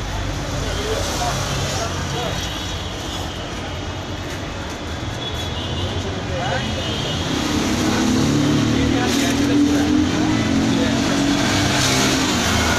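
Steady rumble of road traffic, growing louder in the second half as a vehicle engine comes up.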